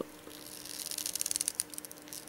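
Faint rapid clicking and scraping of a plastic 6-inch Hasbro action figure's leg joint as it is worked by hand, over a low steady hum.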